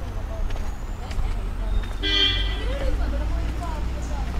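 A short, high horn-like toot about two seconds in, lasting about half a second, over a steady low rumble.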